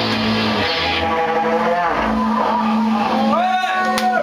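Live speed metal band ending a song: the distorted full-band sound cuts off about a second in, leaving a low sustained note ringing. Near the end, a voice lets out long held shouts.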